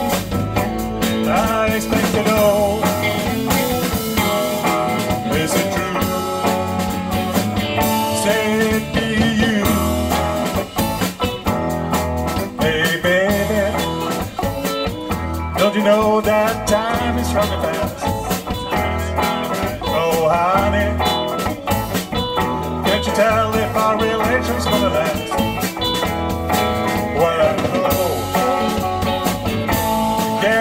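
Live rock band playing: electric guitars over bass guitar and drum kit, with bending guitar lines in the middle range and a steady beat underneath.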